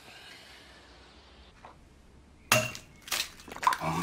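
Glass and crockery being handled on a kitchen table: a sharp clink about two and a half seconds in, then several more short knocks and clinks.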